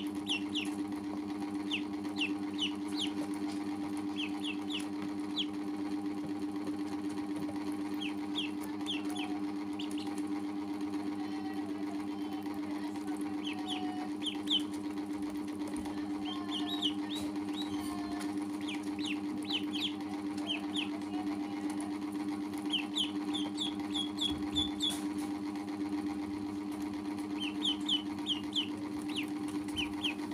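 Ducklings peeping: short, high chirps in quick clusters of two to five every few seconds, with a longer run of them a little past the middle. Under them runs a steady low machine hum, the loudest sound.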